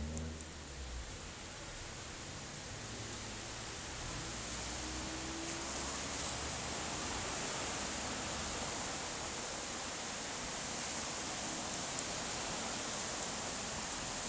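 Steady, even hiss of outdoor street ambience, a little louder from about four seconds in.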